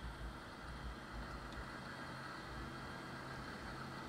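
Steady hum of the space station module's ventilation fans and equipment, an even whir with a low drone underneath.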